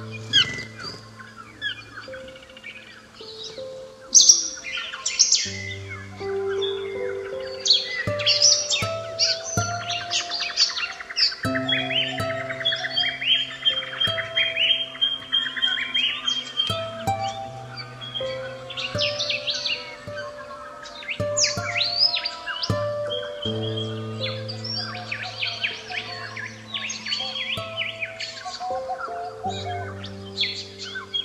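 Soft piano and guitar music with slow held chords, mixed with birdsong: many short high chirps throughout, with a rapid trill and a held whistle in the middle.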